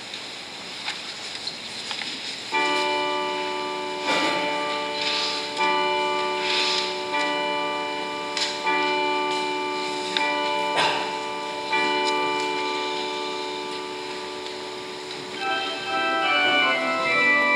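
Church bell ringing: about two and a half seconds in it begins striking, roughly once every one and a half seconds, each stroke ringing on into the next. Just at the end an organ begins.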